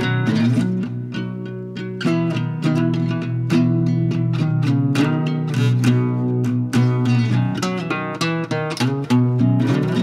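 Nylon-string acoustic guitar played solo in an unusual open tuning: an instrumental passage of plucked notes and chords, several a second.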